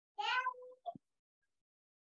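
A cat meowing once: a single short call, under a second long.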